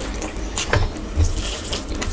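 Close-miked wet eating sounds: a mouthful being chewed while fingers squish and mix basmati rice with oily red spinach on the plate, with a few short sharp squelches.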